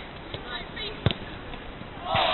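A football being kicked: one sharp thud about a second in, with a couple of lighter knocks before it, over faint players' voices.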